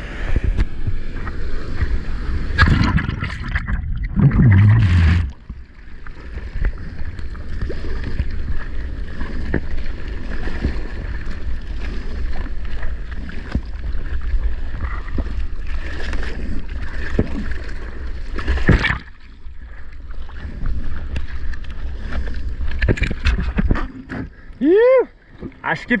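Surf water churning and splashing right against a camera microphone held at water level as a surfer paddles into and rides a breaking wave, with a heavy low rumble of water and wind and two loud splash bursts a few seconds in. A man's shout comes near the end.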